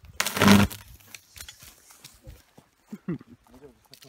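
A 22 kV overhead power line crackling with an electrical discharge: a sharp, loud buzzing crackle lasting about half a second shortly after the start, then faint scattered crackles. A person's voice follows near the end.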